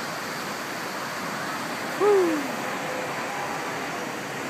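A single short falling "whoo" shout from a water-slide rider about two seconds in, the loudest sound, over a steady rush of flowing water.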